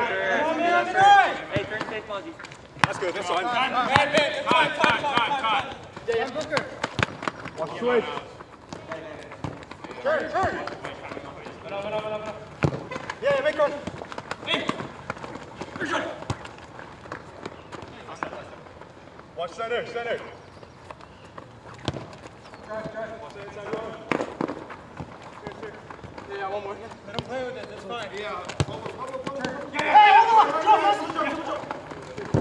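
Players shouting to one another during an arena soccer game, the words unclear, with sharp knocks of the ball being kicked against the hard court and boards and the patter of running feet.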